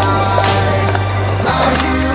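Background music with a steady bass line over skateboard sounds: a sharp board clack about half a second in and another near the end, as a skateboard is flipped and landed.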